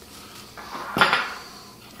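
A utensil knocks once against kitchenware about a second in, ringing briefly, with a smaller tap just before and light handling of dishes and utensils around it.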